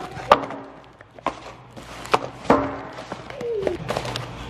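Small boxed bearings being unpacked and set down on a metal shop table: a handful of sharp knocks and clatters, the loudest about a third of a second in, a couple of them with a brief ring.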